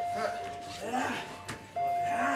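Short shouts and calls from people's voices, with a steady beep-like tone held for about a second at the start and again near the end, and a single sharp click just before the second tone.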